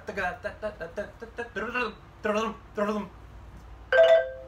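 A man's voice speaking, with no instrument played; a single struck xylophone note begins right at the very end.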